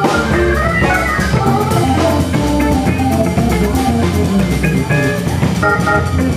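Jazz organ trio playing: organ, guitar and drum kit together, with a line of quick single notes over the organ and the drums.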